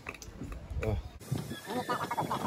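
Indistinct voices, sparse at first and busier after about a second, when several short voice sounds overlap.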